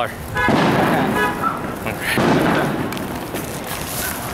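Two fireworks explosions, about a second and a half apart, each a sudden bang that dies away in a rumbling echo.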